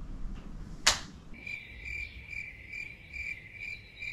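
A sharp swish about a second in, then a steady high-pitched trill that pulses about three times a second and runs on to the end.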